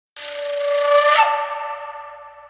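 Intro of a reggae song: a single held, horn-like note swells in, steps up in pitch just over a second in, then fades away.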